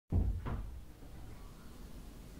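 Two dull thumps in quick succession at the start, the second one brighter, then a faint low room rumble.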